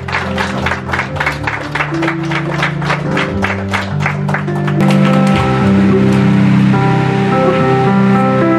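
Guests clapping in a steady rhythm, about four claps a second, over background music. The clapping fades out about halfway through and the music carries on with long held notes.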